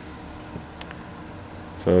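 Steady low hum of a plugged-in electric milk house heater's fan, running on its medium setting.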